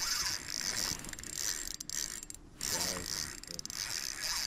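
Spinning reel ratcheting in a repeating, high-pitched clicking while under load from a hooked king salmon.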